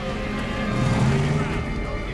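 A film soundtrack mix: background music with held tones over the low running of a car engine and indistinct voices.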